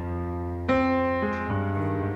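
Solo piano playing slow, sustained chords, with a louder chord struck under a second in and the harmony shifting twice after.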